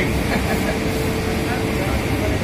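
Steady drone of spinning-mill machinery, with a constant mid-pitched hum over a low rumble.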